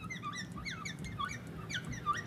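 A felt-tip marker squeaking on a glass lightboard as a word is written. It makes a quick run of short, high squeaks, several a second, each sliding up or down in pitch with the pen strokes.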